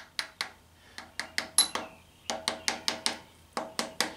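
Soft-faced mallet tapping a crankshaft oil seal into the pulley end of a VW air-cooled engine case: quick runs of light taps, about five a second, with short pauses between runs.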